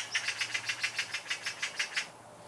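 A bird calling in a fast, even run of short, high-pitched notes, about six or seven a second.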